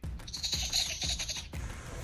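Neonatal raccoon kit crying: one high, raspy cry lasting about a second while it refuses the feeding nipple, over soft background music.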